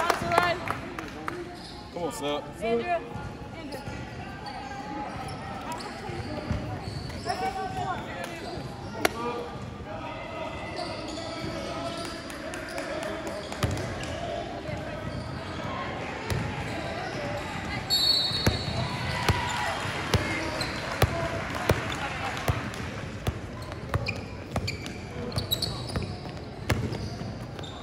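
A basketball being dribbled on an indoor court, its bounces sounding as scattered sharp knocks, under indistinct voices and shouts from players and spectators. A spectator claps near the start.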